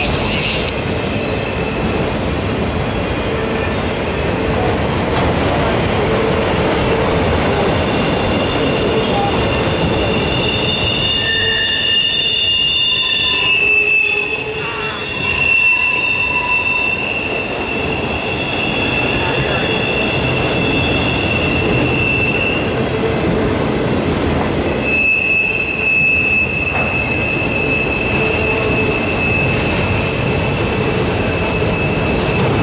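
Autorack freight cars rolling past close by: a steady rumble and clatter of steel wheels on rail, with high-pitched wheel squeal that comes and goes, strongest from about ten seconds in.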